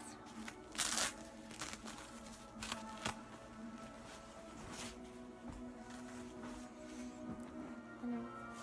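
Rustling and crinkling of a diaper being pulled off a silicone baby doll, in several short bursts, the loudest about a second in, over faint background music with a steady low tone.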